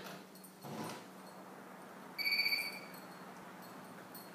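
A short steady electronic beep, like a security system's door-open chime, about two seconds in, as the dog gets the glass patio door open. A brief soft clatter from the door comes about a second in.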